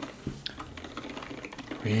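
Typing on a computer keyboard: light key clicks at an uneven pace.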